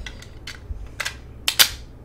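Hard plastic parts of a toy Scouter clicking as they are pressed together. There are several light clicks, and the loudest is a pair of sharp snaps about one and a half seconds in.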